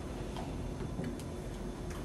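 Quiet room tone with a steady low hum and a few faint, irregular clicks.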